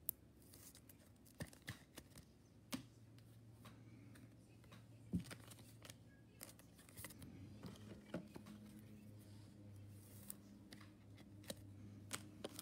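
Near silence broken by faint, scattered clicks and light rustles of trading cards being handled, over a faint low steady hum.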